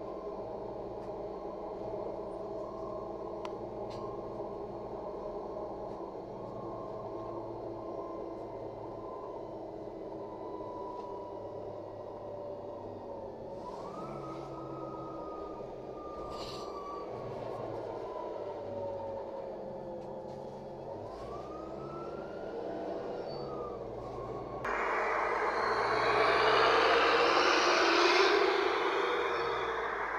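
Cabin sound of a LiAZ 5292.67 city bus under way: the engine and transmission drone steadily, their pitch rising and falling a couple of times as the bus speeds up and shifts. Near the end it switches abruptly to louder street and traffic noise.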